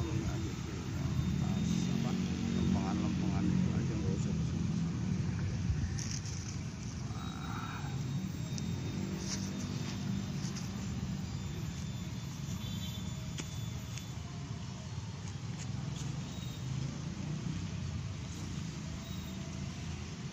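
Background murmur of voices over a steady low rumble, with a few light clicks and taps.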